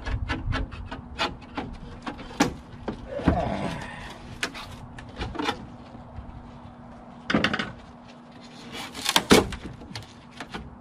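A fire-damaged computer case of steel and melted plastic being pried and worked by hand: a string of knocks, clicks and scrapes, with the loudest clatters about seven and nine seconds in.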